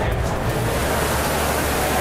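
Water of a large indoor statue fountain splashing and falling, a steady even rushing noise.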